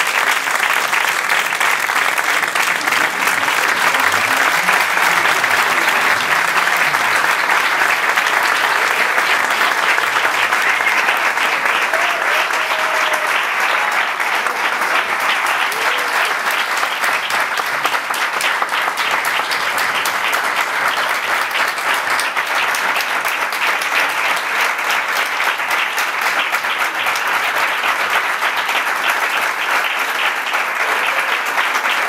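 Large audience applauding, dense clapping that holds steady at a high level, with a few faint voices calling out among it.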